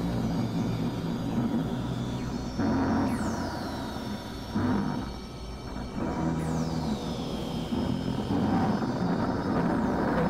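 Experimental electronic drone music: dense low synthesizer drones and noise whose texture and loudness shift abruptly every couple of seconds. Two high sweeps fall in pitch, one about three seconds in and one around six and a half seconds.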